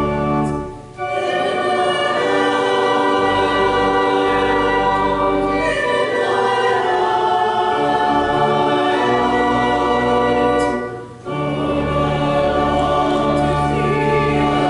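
A church choir singing a hymn over sustained low pipe-organ tones. The music dips briefly, as between lines, about a second in and again about eleven seconds in.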